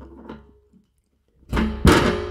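A strummed guitar chord starting about one and a half seconds in, then ringing and slowly fading: a short musical sting.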